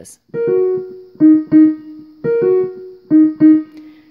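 Digital piano played with the fist: four short groups of notes, rolls over the group of three black keys and a bump onto the group of two black keys, each note ringing on and fading.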